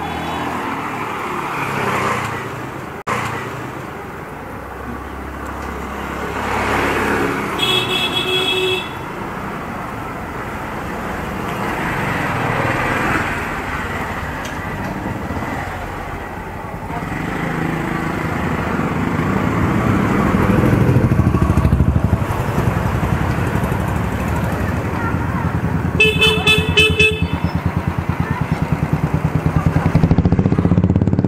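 Street traffic, with vehicle engines running and passing. A horn sounds once, briefly, about eight seconds in, and near the end a horn beeps in a rapid series. A small engine runs close by and grows louder through the second half.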